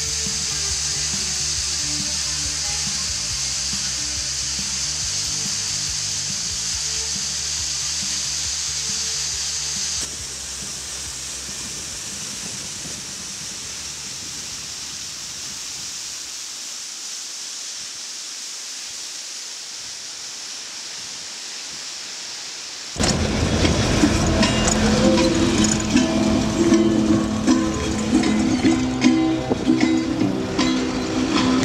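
Background music with a steady hiss over it for the first ten seconds. Then a quieter, even rushing hiss of water falling over rock ledges in a small waterfall. About 23 seconds in, a new, louder piece of music starts.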